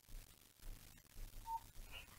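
Near silence: faint room tone with a few soft, small sounds.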